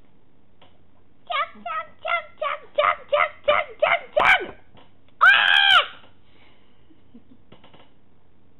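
High-pitched human voice making wordless sounds: starting about a second in, a run of about ten short, rhythmic yelps grows louder, and about five seconds in comes a loud, high squeal held for under a second.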